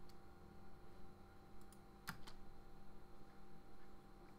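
A few faint computer keyboard and mouse clicks, the clearest a pair about two seconds in, as the space bar is pressed to start playback, over a faint steady hum.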